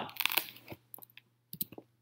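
A few faint, scattered short clicks and small crackles, with a low steady hum underneath.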